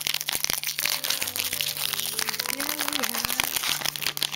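Foil booster-pack wrapper of a Pokémon trading card pack crinkling and crackling densely as it is torn open by hand.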